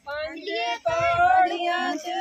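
Women singing a Punjabi folk song (boliyan) in high, held notes, with a short break a little under a second in.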